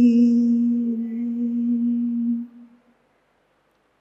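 The last held note of a devotional chant: one steady tone that fades out about two and a half seconds in, then silence.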